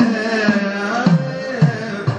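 A male voice singing a Kathakali padam in a slow, held, ornamented melodic line, with a struck percussion beat about every half second keeping time.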